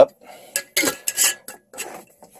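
A few short clinks and rustles of kitchen containers and a utensil being handled as a container is closed back up.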